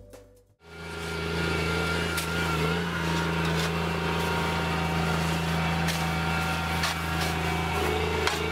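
Steady low drone of heavy machinery running close by, coming in just under a second in after a brief silence. A few sharp knocks and scrapes of shovels working snow sound over it.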